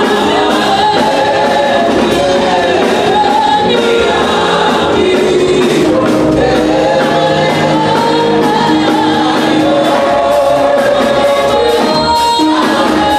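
Gospel worship song sung by a woman and a man into handheld microphones, with more voices joining in as a group, loud and steady.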